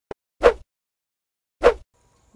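Two short, sharp knocks about a second apart, each dying away quickly, with a faint click just before the first.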